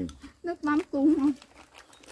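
Speech: a voice talks for about a second, then a lull with only faint background sound.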